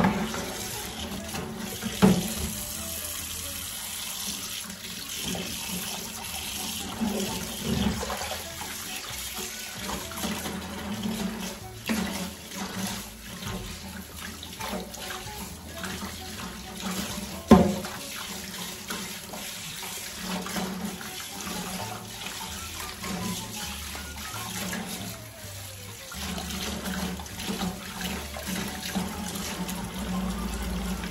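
Kitchen tap running into a stainless-steel sink while dishes are washed by hand, with occasional clinks of crockery, the loudest about two seconds in and just past the middle.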